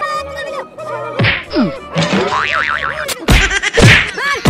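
Cartoon comedy sound effects: springy boings and sliding, warbling pitch sweeps, then two hard whacks close together near the end.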